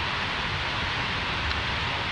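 A steady, even hiss of background noise in a pause between speech, holding one level throughout.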